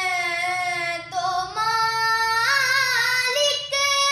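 A girl singing a naat solo, holding long sustained notes. She takes a short breath about a second in, and her melody rises in a wavering, ornamented run through the middle.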